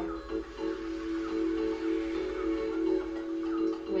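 Soft background music of steady held tones, like a sustained drone, with faint higher notes drifting over it.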